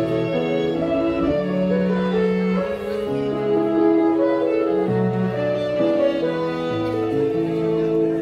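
Instrumental trio of violin, cello and electric keyboard playing a slow, lyrical melody, with the violin carrying sustained notes over the cello's bass line and keyboard chords.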